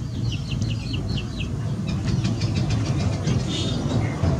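Birds chirping in short high notes, then a quick run of ticks about two seconds in, over a steady low outdoor rumble.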